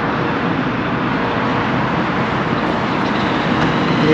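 Steady road traffic noise from cars driving along a wide multi-lane street, growing a little louder toward the end.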